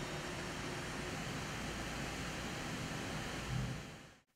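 Steady machine-shop background noise: an even hiss like fans and ventilation running, with a faint low hum.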